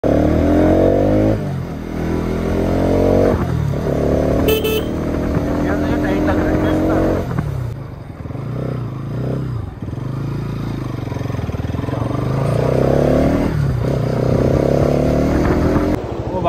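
Bajaj Pulsar NS200's single-cylinder engine accelerating through the gears, its pitch climbing in each gear and dropping at every upshift. In the middle it eases off to a lower, rougher run, then pulls up again near the end.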